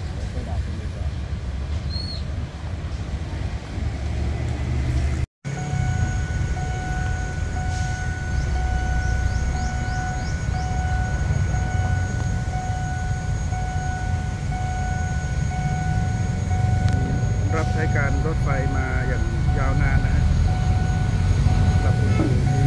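Low rumble of a train's passenger coaches rolling past, then, after a cut, the low rumble of the 60-year-old SRT diesel locomotive 4007 approaching on the line. A steady high tone pulses a little more than once a second over the rumble, and brief wavering calls come near the end.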